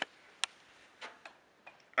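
A few light, sharp ticks in a quiet room: one clear tick about half a second in, then fainter ones spaced irregularly after it.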